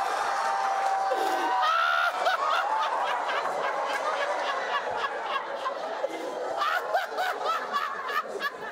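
A studio audience and panel laughing loudly together, a crowd of overlapping laughs, with scattered hand clapping from about two seconds in.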